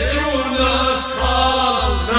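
Kashmiri Sufi song: a voice singing long, held, slightly wavering notes over a steady low drum beat.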